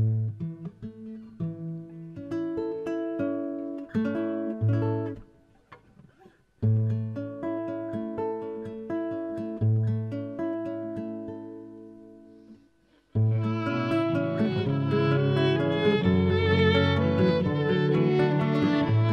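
Live acoustic guitar picking an unhurried arpeggiated introduction in phrases of ringing, slowly fading notes, with short breaks about six and thirteen seconds in. About thirteen seconds in, the music fills out as a violin joins with held, bowed notes over the guitars.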